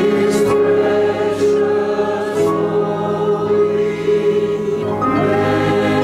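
Mixed church choir singing an anthem in sustained chords, with a new phrase entering about five seconds in.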